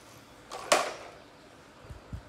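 A single short, sharp scrape or rustle of plastic being handled a little after halfway, followed near the end by a soft low thump on the floor.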